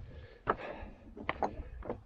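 Running footsteps on loose scree, the stones knocking and clinking underfoot in several sharp clacks as some of the rocks shift, over wind rumbling on the microphone.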